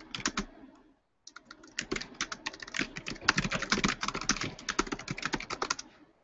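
Typing on a computer keyboard: a short burst of keystrokes, a brief pause, then about four and a half seconds of fast, continuous typing.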